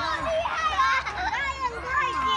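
Several children's high voices calling and chattering at once as they play.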